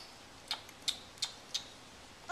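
Four short, sharp mouth clicks about a third of a second apart from a baby eating a Cheerio.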